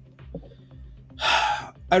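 A man takes one loud breath through the mouth, lasting about half a second, a little past the middle, just before he starts speaking again.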